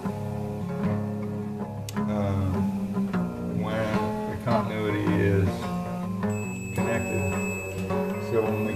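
Background music with guitar. About six seconds in, a multimeter's continuity tester starts a steady high-pitched beep, the tone it gives when its test leads are touching, and holds it under the music.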